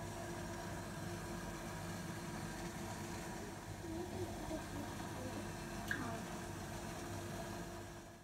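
Steady background hum with hiss, with a brief click about six seconds in.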